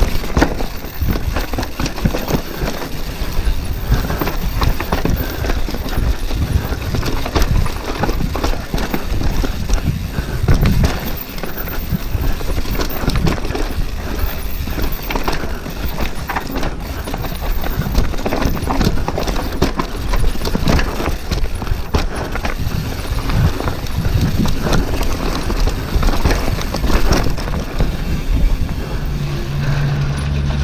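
Downhill mountain bike rattling and clattering at speed over roots and rocks, with tyres on loose dirt. There is a dense, continuous run of knocks and frame and drivetrain rattle.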